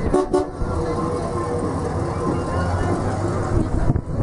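A car horn toots twice briefly at the start, over the low, steady rumble of a late-1960s Pontiac Bonneville's V8 moving slowly past.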